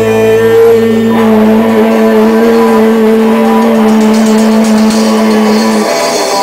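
Rock band playing loudly with long held, sustained notes ringing for several seconds. A low note drops out about two seconds in, and the held notes stop just before the end.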